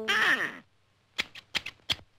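Cartoon sound effects: a tone that swoops down in pitch over the first half second, then after a short pause a quick run of about five sharp clicks near the end.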